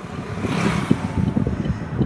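Wind buffeting the microphone while travelling along a street, over a steady low road rumble. An oncoming motorbike passes about half a second in, a hiss that swells and fades.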